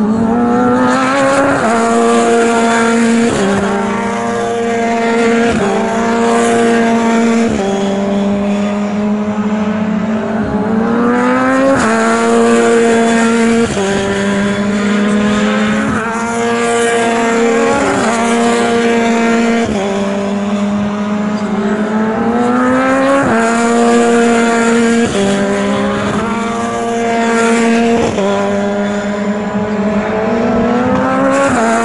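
BRDC British Formula 3 single-seater race cars at speed, the engine note loud throughout. The pitch climbs under acceleration and drops in quick steps at each upshift, swelling and fading as cars pass.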